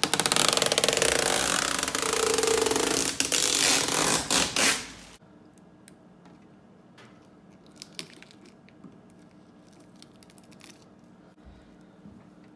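Blue protective plastic film being peeled off a new GE dryer's control panel: a loud, crackly tearing that cuts off abruptly about five seconds in. After that it is quiet, with a few faint clicks.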